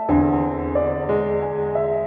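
Slow background piano music: single sustained melody notes over a low bass note that comes in at the start.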